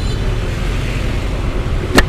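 Motor scooter engine idling with a steady low rumble amid street traffic. A single sharp knock comes near the end.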